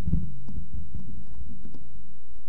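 Handling noise from a handheld microphone over a PA system: low thumps and rumble with a few small clicks, over a steady low hum.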